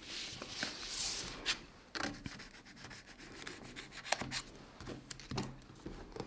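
Hands rubbing and handling a spiral-bound paper planner: a soft brushing rub over about the first two seconds, then scattered light taps and clicks.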